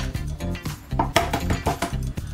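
Background music with a bass line and sharp percussive hits.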